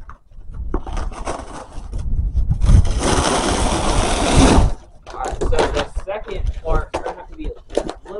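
Scissors cutting open a cardboard shipping box: a scratchy cutting sound about a second in, then a louder, steady rip lasting nearly two seconds in the middle, followed by short crackles as the cardboard is handled.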